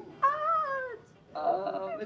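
Two short, high-pitched vocal sounds, the first rising and falling in one arched call, the second flatter.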